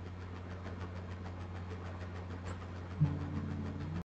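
Steady low background hum with faint, evenly spaced ticking. About three seconds in, a sudden click, after which a few low steady tones join the hum.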